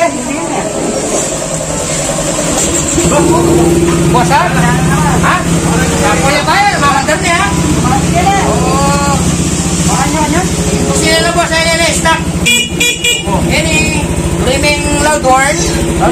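Yamaha Aerox scooter's engine idling steadily after starting up, with a few short horn beeps about eleven to thirteen seconds in, under men's voices.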